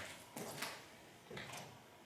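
A few faint short knocks in a quiet room: one about a third of a second in, another just after, and a third near a second and a half.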